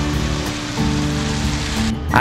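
Steady hiss of rain under background music with held low notes; the rain sound stops abruptly at the very end.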